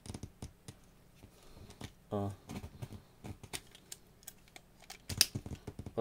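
Irregular light clicks and taps, several a second, the sharpest about five seconds in; a man utters a short "a" about two seconds in.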